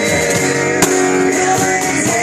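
Live acoustic rock band playing an instrumental passage: strummed acoustic guitar and electric guitar over a cajon beat, with one sharp percussive hit a little under a second in.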